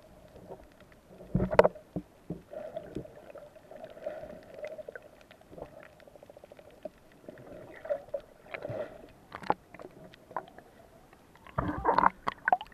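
Underwater sound picked up by a submerged camera: muffled water movement with irregular clicks and knocks, louder bumps about a second and a half in and near the end, over a faint steady hum.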